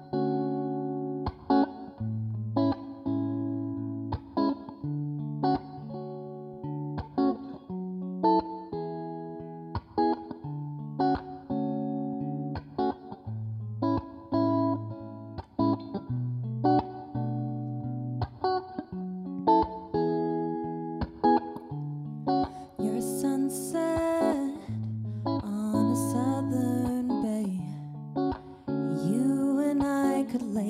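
Stratocaster-style electric guitar playing a picked, rhythmic intro over changing bass notes. A woman's voice comes in singing about three-quarters of the way through, over the guitar.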